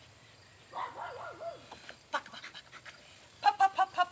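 Small dog barking in quick, high-pitched yips, several a second, starting near the end and loudest there; a softer wavering vocal sound comes about a second in.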